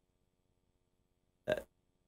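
Near silence, then a man's brief "uh" filler sound near the end.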